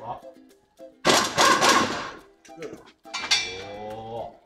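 Voices over background music, with a loud, noisy burst lasting about a second, starting about a second in.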